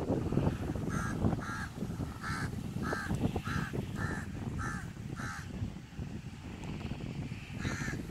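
A bird giving a run of short, repeated calls, about two a second. The calls pause about five and a half seconds in and start again near the end, over an uneven low rumbling noise.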